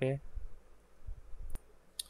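A single sharp click of a computer mouse about one and a half seconds in, with a few faint low bumps before it.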